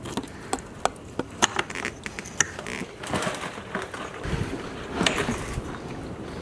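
Sharp clicks and knocks of fuel-line fittings being worked loose by hand on a quad's fuel tank, followed by rustling and bumps as the plastic fuel tank is handled and lifted off the frame.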